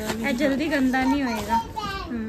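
Speech only: one high-pitched voice talking throughout.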